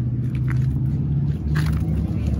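A car engine idling with a steady low rumble, rising slightly in pitch about one and a half seconds in.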